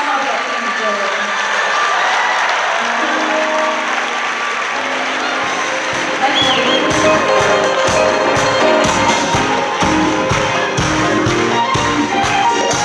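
Live concert crowd applauding and cheering while a band starts a song: held keyboard chords come in about three seconds in, and a steady drum beat joins around seven seconds.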